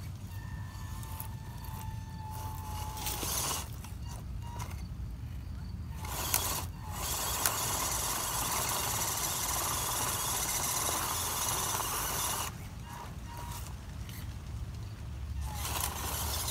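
The small electric motor and gearbox of a WPL C24 RC crawler whining as it crawls over rocks, with a louder, rougher stretch of drivetrain noise lasting about five seconds in the middle.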